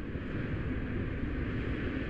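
A steady low rumble with a hiss above it, a whoosh-and-rumble sound effect laid under an animated channel logo.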